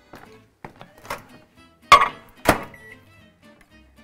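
A microwave door knocking open and shut, two sharp knocks about half a second apart, then a short beep from its keypad as it is set to soften frozen peanut butter.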